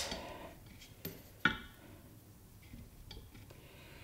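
Steadicam Merlin 2 stabilizer being handled on its stand as its arm is swung round: a faint click about a second in, a sharper knock just after, and a few light ticks near the end.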